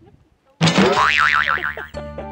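A cartoon "boing" sound effect: a sudden sound with a fast wobbling pitch, starting about half a second in and dying away over about a second and a half.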